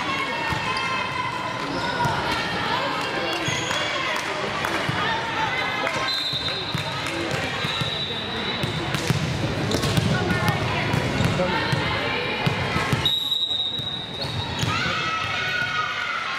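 Volleyball gym hubbub: players and spectators chattering and calling out, with volleyballs bouncing on the hardwood court. Two high, steady whistle blasts sound, one about six seconds in and another near the thirteen-second mark.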